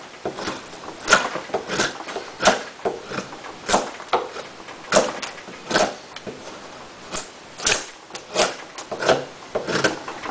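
Gerber Profile fixed-blade knife with a 420HC steel blade shaving curls off a wooden post: a run of short cutting strokes, about one every second or less, slightly irregular.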